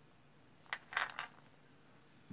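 Small earrings with metal hooks set down on a hard tray: a quick cluster of light clicks and clinks about three quarters of a second in, over in about half a second.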